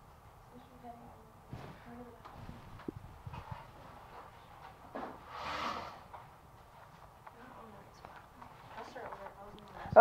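Faint, irregular tapping of a computer keyboard as someone types, with low voices murmuring in the room.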